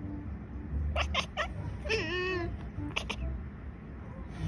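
Domestic cats vocalising: a few short, sharp calls about a second in, one drawn-out meow with a wavering pitch around two seconds in, and two more short calls near the three-second mark.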